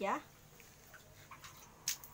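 Quiet water sounds from hand-washing at a basin, then one short splash as wet hands are pressed to the face just before the end.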